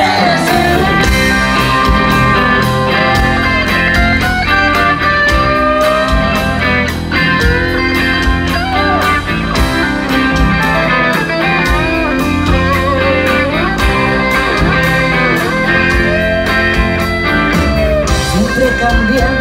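Live rock band playing an instrumental passage: an electric guitar playing lead lines with bent notes over bass guitar and a steady drum beat.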